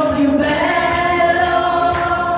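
Several women's voices singing together into microphones, holding long notes.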